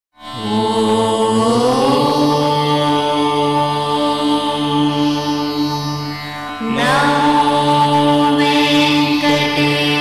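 Indian devotional intro music: a steady drone under long held notes that slide upward into each phrase. The music fades in at the start, dips slightly, and a new phrase begins about seven seconds in.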